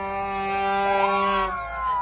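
Plastic stadium horn blown in one long, steady, buzzing note that stops about one and a half seconds in, with a rising cheer-like call over it.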